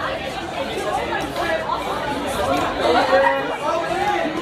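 Chatter of many students' voices in a large indoor hall, overlapping, with no single voice standing out.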